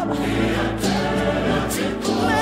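South African gospel song: a choir singing together over instrumental backing.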